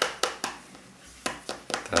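Small game chip tapped repeatedly on a tabletop game board: a run of quick sharp taps, a pause of under a second, then more taps.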